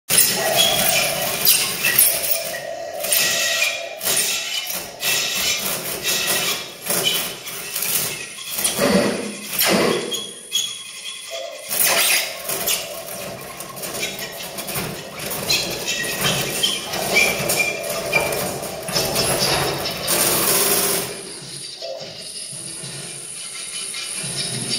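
Live experimental music: held tones from a small mouth-blown instrument played into a microphone, mixed with many clicks, crackles and noisy electronic textures. It grows quieter shortly before the end.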